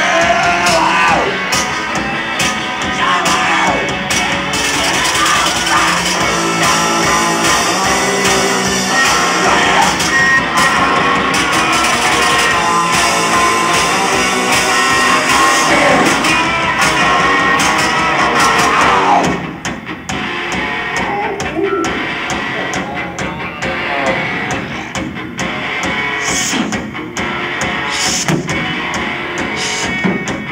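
Live garage-punk band playing an instrumental stretch of the song on electric guitars and drum kit. About two-thirds of the way through, the dense wall of sound suddenly thins out and drops in level.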